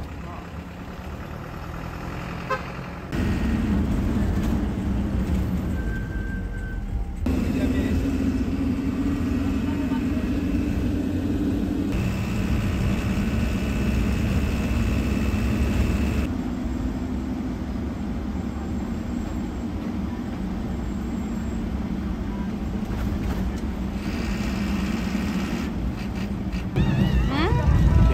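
Dala-dala minibus engine and road noise, heard mostly from inside the moving bus: a steady hum that shifts abruptly between short edited clips. Near the end it gives way to louder, busier street noise.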